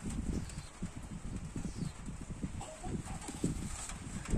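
Irregular muffled knocks and bumps of glasses and water being handled on a table, as a glass of cold water holding a colour-changing toy car is set in place.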